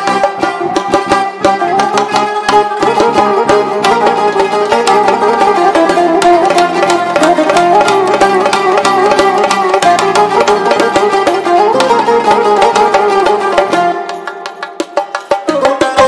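Fast melody on a plucked long-necked lute with electronic keyboard accompaniment, in quick repeated notes; the music thins out briefly near the end, then picks up again.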